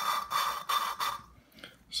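A valve being hand-lapped into its seat on a 1958 Alfa Romeo 1300 cylinder head: the steel valve face rasps against the seat insert through roughly 200-grit grinding compound as the suction-cup stick twists it back and forth. There are about four gritty strokes, which stop a little after a second in.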